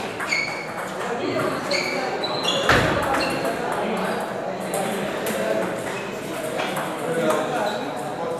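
Table tennis ball striking the bats and table in a rally, a quick series of short high pings in the first few seconds, with one loud sharp knock about three seconds in.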